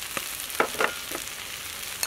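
Metal spoon stirring sugar and salt into cooked sticky rice in a metal bowl: a few short knocks and scrapes of spoon on bowl, about four in the first second or so, over a steady hiss.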